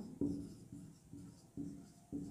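Marker pen writing on a whiteboard: a series of short, faint strokes about two a second as words are written out.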